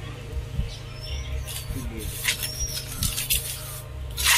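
Trowel scraping and tapping in wet cement mortar as it is packed into a plastic bucket mould: a scattering of short, sharp scrapes and knocks.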